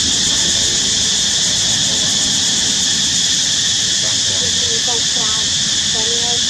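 A loud, steady high-pitched hiss that does not change.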